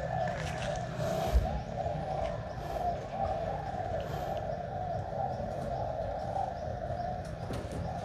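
Pigeons cooing continuously, several at once, with a few light taps over them.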